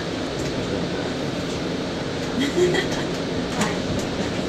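Steady low running noise inside an MBTA Green Line light-rail trolley car, with passengers' voices and a laugh near the end.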